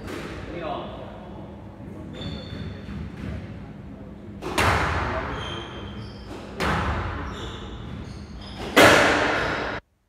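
Squash ball strikes during a rally: sharp smacks of racket on ball and ball on the court walls, each ringing on in the echoing court. Three loud strikes come about two seconds apart in the second half, the last the loudest, and the sound cuts off suddenly just before the end.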